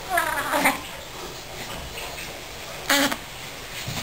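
Newborn baby vocalizing: a short, falling, cry-like squeal at the start, then a second, briefer one about three seconds in.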